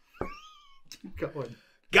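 A person's short high-pitched squeal, rising and then falling in pitch, followed about a second in by a man's voice starting to sing "Go...".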